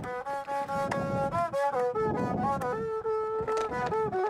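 Handmade Berber bowed string instrument playing a melody of held notes that step up and down.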